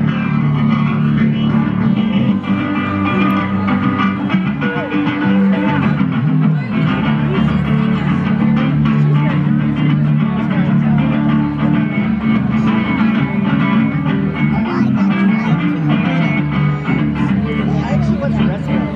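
Acoustic guitar played live through a stage PA, a steady blues accompaniment.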